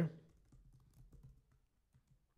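Faint computer keyboard typing: a short run of soft key clicks.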